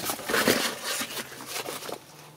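Handmade cloth window blackout cover being unfolded and shaken out, the fabric rustling irregularly.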